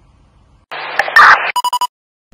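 Electronic glitch sound effect for a channel logo sting. A loud burst of distorted static starts about two-thirds of a second in and ends in a rapid run of about five short beeps.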